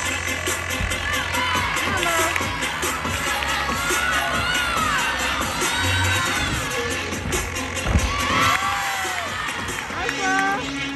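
Teammates and spectators cheering and shouting in high voices over floor-exercise music from the gym speakers, with a single thump about eight seconds in.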